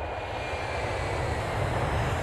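Aircraft sound effect under an animated logo intro: a steady rushing noise with a deep rumble that starts suddenly at the cut.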